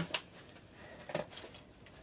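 Faint rustle of a cotton placemat being laid and smoothed on a woven bamboo tray, with a couple of light taps about a second in.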